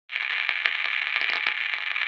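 Radio-style static: a steady thin hiss with scattered crackles and clicks, starting suddenly.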